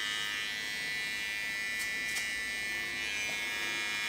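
Electric hair clippers running with a steady buzz as they trim around the ear, with two faint ticks about two seconds in.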